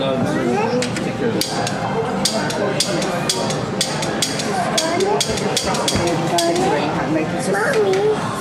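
Voices and chatter in a busy restaurant dining room, with a quick run of sharp clicks and clinks from about one second in to about six seconds.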